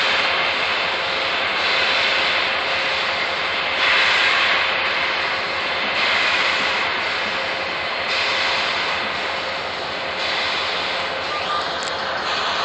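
Union Pacific 844, a 4-8-4 steam locomotive, getting under way with its cylinder cocks open: a loud, steady hiss of escaping steam that surges about every two seconds as the engine works.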